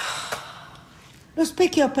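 A woman's short breathy exhale, like a sigh, then her voice breaking into agitated speech about one and a half seconds in.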